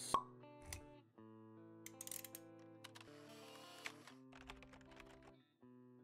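Quiet logo-intro jingle: held music notes with a short pop right at the start and a few soft clicks and flourishes scattered through it.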